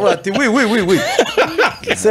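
A man chuckling into a studio microphone: a run of laughs, his voice wobbling up and down in pitch.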